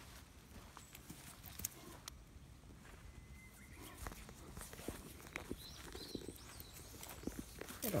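Faint, scattered clicks and rustling from an Irish Setter puppy moving about on a lead and collar over grass.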